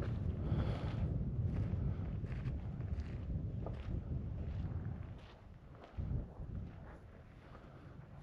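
A car engine running as a steady low rumble, then switched off about five seconds in, leaving near quiet.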